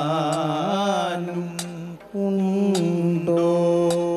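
Kathakali vocal music: a male singer holds long, wavering, ornamented notes, breaking off briefly about two seconds in. Sharp strikes keep a steady beat about once a second.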